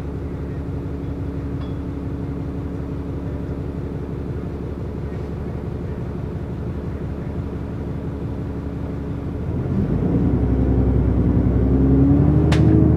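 Bus diesel engine heard from inside the passenger saloon, idling steadily with a low hum, then revving up about nine and a half seconds in as the bus pulls away.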